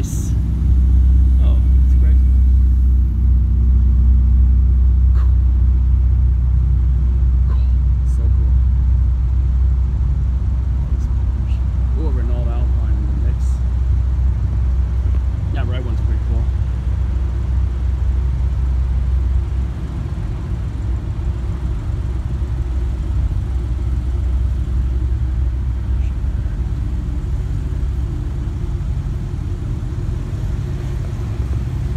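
Sports car engines running at low speed as cars roll slowly through a parking lot, a steady low rumble that drops a step about two-thirds of the way through.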